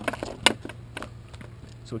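A few handling knocks and clicks as a footpad and foot strap are lifted off a twin-tip kiteboard, the sharpest about half a second in.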